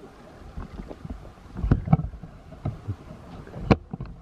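Footsteps on a dirt forest trail mixed with camera-handling bumps: irregular thumps, a cluster of them about halfway through and the sharpest knock near the end.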